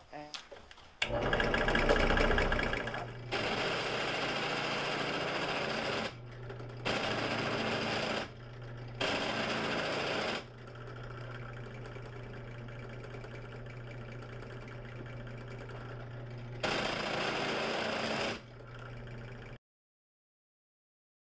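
Genesis 6-inch benchtop drill press motor starting about a second in and running with a steady hum. A tungsten carbide countersink bit cuts into an aluminium hydrofoil fuselage in five louder grinding spells with pauses between them. The sound cuts off just before the end.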